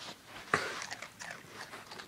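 A dog crunching and chewing dry Apple Jacks cereal: one sharp, loud crunch about half a second in, then a run of smaller crunches.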